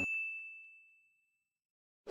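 Notification-bell 'ding' sound effect of a subscribe-button animation: one bright ding that fades out over about a second and a half.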